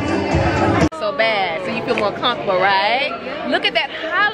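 Party dance music with a heavy bass beat, cut off suddenly about a second in. Then women's voices exclaiming and chattering, the pitch sliding widely up and down.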